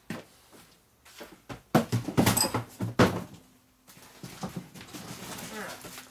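Cardboard boxes being shifted and lifted, with knocks and scuffs that are loudest about two seconds in, and footsteps on the shop floor. A faint steady tone runs through the second half.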